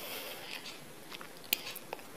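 Potato smiley patties deep-frying in hot oil: a steady sizzle with a couple of sharp crackling pops in the second half.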